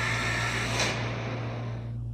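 Film trailer soundtrack between shots: a rushing whoosh of noise that fades out about a second in, over a steady low hum.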